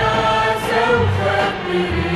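Arabic orchestral song: singing over orchestral accompaniment, with bass notes coming in about a second in.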